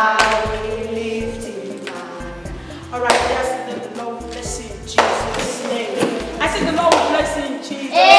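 A woman singing a church worship song over music, with a few sharp claps. Partway through she stops singing and speaks.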